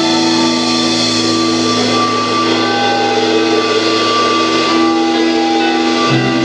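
Instrumental progressive rock band playing live: a slow passage of long held chords over a steady hiss, with no drum beat. The chord changes about two seconds in and again near five seconds.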